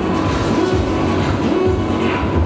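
Music with a steady bass beat.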